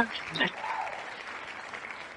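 Faint recorded applause sound effect from a wheel-spinner web page: an even, steady patter of clapping celebrating the drawn winner.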